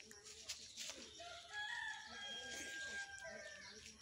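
A rooster crowing once, faint, one long call of about two seconds starting a little over a second in. A couple of faint clicks come just before it.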